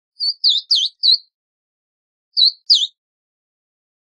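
Verdin calling: a quick run of four short, high chipping notes in the first second, then two more near the three-second mark.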